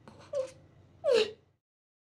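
A woman sobbing with her hand over her mouth: a short sob, then a louder cry falling in pitch about a second in, cut off suddenly.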